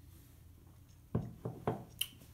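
A stemmed beer glass set down on a table: three short, dull knocks a little over a second in.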